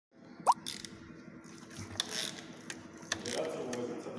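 Ratchet wrench on the crankshaft pulley bolt turning an engine over by hand: scattered clicks of the ratchet and metal, with a short rising squeak about half a second in, the loudest sound.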